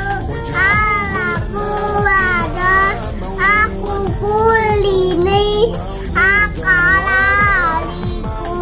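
A child singing in high-pitched, bending phrases over background music.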